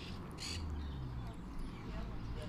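Parakeets in an aviary giving harsh, short squawking calls, the loudest about half a second in.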